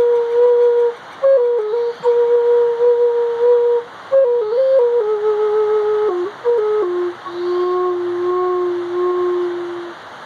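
A flute playing a slow, simple melody: long held notes with short breaks and quick steps between pitches. It ends on a long, lower held note with a slight waver that fades out near the end.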